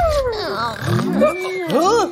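Whining puppy sound effects: several overlapping cries that rise and fall in pitch.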